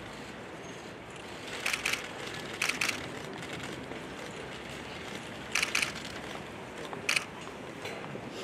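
Press camera shutters firing in short rapid bursts, four quick clusters of clicks over a steady outdoor background hiss.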